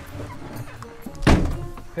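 A single dull thunk about a second and a half in, heard from inside a small car's cabin.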